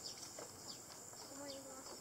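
Faint outdoor ambience: a steady high-pitched insect drone with short high chirps over it, and faint distant voices talking.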